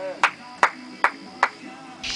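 A person clapping: five sharp claps, a little over two a second, stopping about one and a half seconds in.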